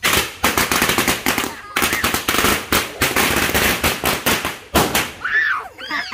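A string of firecrackers going off in a rapid, irregular run of loud bangs that stops about five seconds in.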